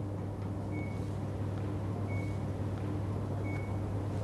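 A faint high electronic beep repeating about every second and a half, three times, over a steady low hum.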